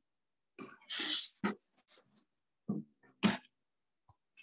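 Short breathy vocal bursts from a person on a video-call microphone: a longer, noisy one about a second in and a sharp one near the end.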